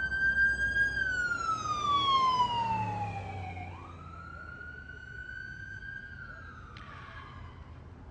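An emergency vehicle's siren wailing in slow sweeps: a held high tone glides down, jumps back up and rises, holds, then falls again. It is loudest in the first three seconds and fainter after that.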